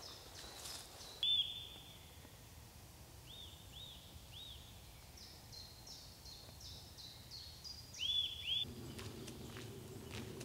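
A woodland songbird singing: short whistled notes repeated in quick series, with the loudest phrases just over a second in and again near the end, over faint outdoor ambience. Footsteps on a gravel track begin near the end.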